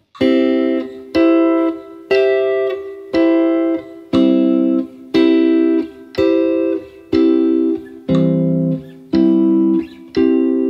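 Clean electric guitar (a Fender Telecaster) playing three-note triad shapes, one picked chord a second in time with a 60 bpm metronome, each chord ringing briefly before the next. The shapes change on every beat, run up and down through the inversions along one string set as a practice exercise.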